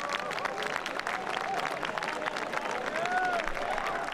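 Golf gallery applauding steadily, dense clapping from a large crowd, with a few voices calling out over it.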